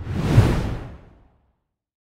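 A whoosh sound effect for a logo sting, with a deep rumble under it. It swells quickly and fades away over about a second.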